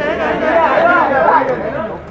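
Loud overlapping voices of a crowd of photographers calling out and chattering at once.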